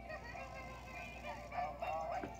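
Tinny music with high singing voices from the small speaker of an animated plush Christmas sled toy.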